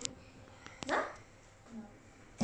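A single short, rising yelp about a second in, over an otherwise quiet room.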